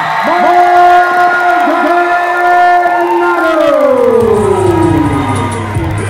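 Ring announcer drawing out the winning fighter's name as one long held call that slides down in pitch near the end, over a cheering crowd. A hip hop music beat comes in about four seconds in.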